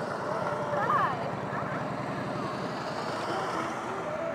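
Motorcycle engines running as the bikes ride past, a fast, even pulsing beat throughout, with voices over them about a second in.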